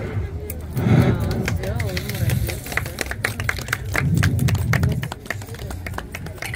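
Dishes and kitchen utensils clinking and knocking in many short, sharp clicks, with indistinct talk in between.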